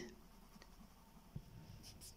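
Near silence: quiet room tone with a single faint click about one and a half seconds in.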